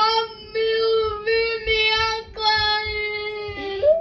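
A child singing a run of long, steady held notes with short breaks between them, ending in a rising slide.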